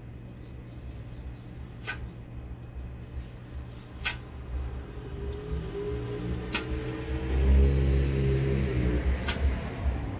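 Razor-blade scraper working over soapy window glass, with a few sharp clicks as the blade meets the glass. In the second half a low, steady rumble with a hum rises, is loudest about three quarters of the way in, and fades near the end.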